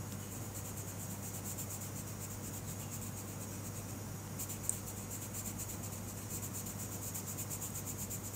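A black coloured pencil scratching on paper in rapid back-and-forth shading strokes, with a single sharp tick a little past halfway.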